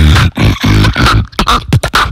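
Solo beatboxing into a handheld microphone: long, deep bass notes broken up by sharp percussive hits in a rhythm.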